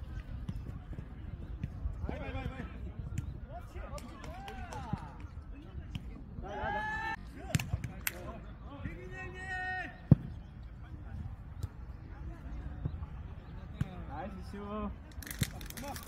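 Jokgu rally: players' short shouts and calls, with a few sharp knocks of the ball being kicked and bouncing on the court. The loudest knock comes about ten seconds in, over a steady low rumble.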